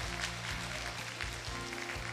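Audience applauding over background music with held low bass notes.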